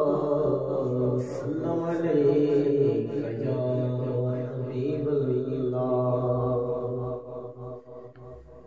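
A man singing a hamd, a devotional poem in praise of God, solo and unaccompanied, in long held notes that slide between pitches. The voice drops away near the end as a line closes.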